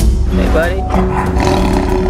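A caged tiger growls for about a second near the middle, over background music with a sung melody.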